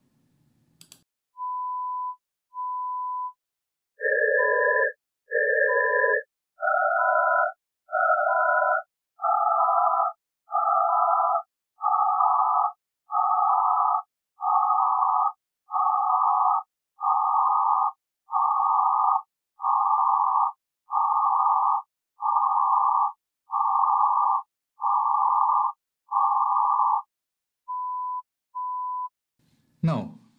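Synthesised notched-noise masking demo. A steady 1 kHz sine tone beeps twice on its own, then sounds inside pairs of 200 Hz-wide noise bands whose gap narrows step by step (1000, 500, 300, 200, 150, 100, 70, 50, 30 Hz), each step played as two short bursts. While the noise lies outside the tone's critical band the tone is heard, and once the bands close in the noise masks it. The demo ends with the bare tone beeping twice more.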